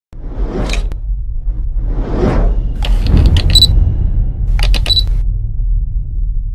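Intro sound design: a steady low rumbling drone under two rising whooshes, then two bursts of quick camera-shutter clicks, each ending in a short high beep.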